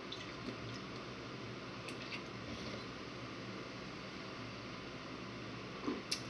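A man drinking malt liquor straight from a 40-ounce bottle: quiet swallowing and liquid sounds, with a few faint clicks in the first couple of seconds.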